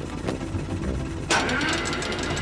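Cartoon helicopter sound effect: a steady low engine and rotor chug, which gets suddenly louder and fuller a little after halfway through.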